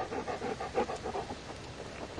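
Dog panting rapidly, right at the microphone, about eight breaths a second, fading out a little past halfway.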